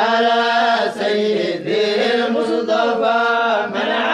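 Vocal chanting without instruments: a melodic voice sings phrases about a second long over a steady low held note.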